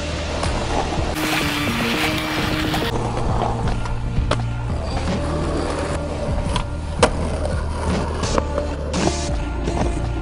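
Skateboard wheels rolling on asphalt, with several sharp clacks of the board hitting the ground, the loudest about seven seconds in. Background music with a deep bass line plays underneath.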